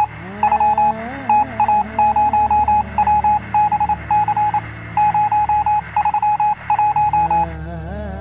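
Electronic beeps at a single pitch, sent in quick irregular groups of short and long tones like Morse code, over slow gliding background music. The beeps stop shortly before the end and the music carries on.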